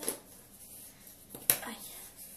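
Two sharp knocks of something being handled, the louder one about a second and a half in, followed at once by a girl's pained 'aïe'.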